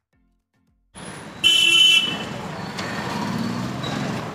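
Street traffic noise that cuts in about a second in, with a vehicle horn honking once for about half a second just after it starts, the loudest sound here.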